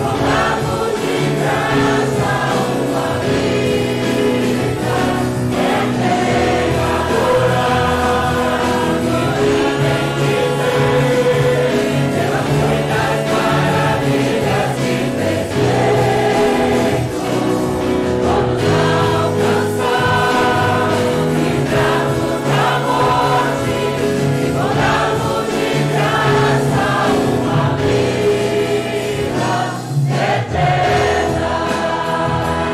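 A congregation singing a Portuguese worship chorus together, accompanied by a small band with acoustic guitars.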